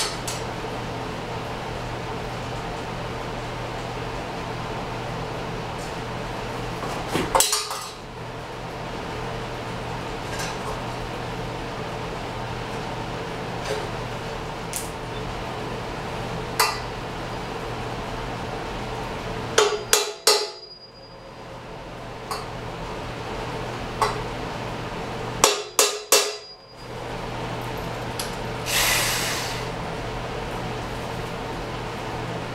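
Sharp metal strikes and clinks on a welded steel frame: scattered single taps, then two quick clusters of three or four loud hits, over a steady shop hum. A brief rushing noise comes near the end.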